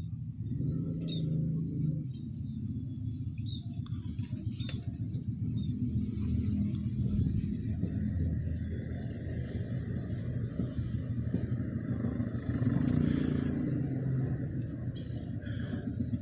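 Low rumble of a motor vehicle's engine, swelling and fading in strength, with a few faint clicks.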